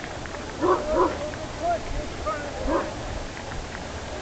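A dog barking excitedly, the two loudest barks about a second in, then a few shorter barks and yips.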